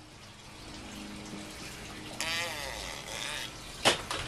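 Water running and trickling from a backyard aquaponics system's grow beds, heard in the background. Partway through, a separate wavering, pitched sound lasts about a second, and a short click comes near the end.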